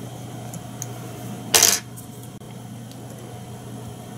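A single short metallic click about one and a half seconds in, from the metal fly-tying tools at the vise, over a low steady hum.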